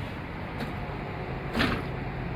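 Large bus diesel engine idling with a steady low hum, with a short burst of noise about one and a half seconds in.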